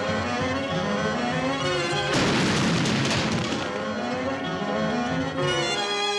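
Brass-led cartoon orchestral score. About two seconds in, a loud noisy crash, like a cymbal crash or impact effect, cuts in over the music and dies away over about a second and a half.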